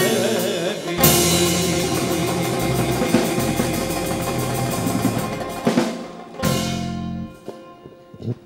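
Live Greek band of bouzouki, electric bass, drum kit and hand drum playing the close of a song: a strong drum hit about a second in, held chords, a few final hits, then the music stops about seven seconds in.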